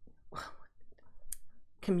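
A woman's breaths and small mouth clicks between words, with a short hissing sound about a second in; her voice comes back near the end.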